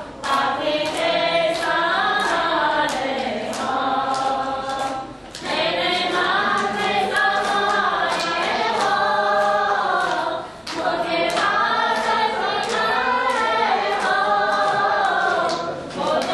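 A group of Vaishnava devotees chanting together in unison, sung phrases with short breaks about five and ten seconds in. A quick regular beat of sharp strikes runs under the chant.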